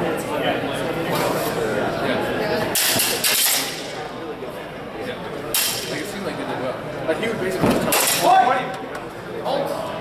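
Indistinct voices of onlookers chatter in a large hall, with a few short sharp noises from the bout about three, five and eight seconds in.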